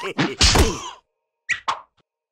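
Cartoon slapstick whack sound effect about half a second in, over a character's brief babbling vocalisation. Two short, sharp hits follow close together near the end.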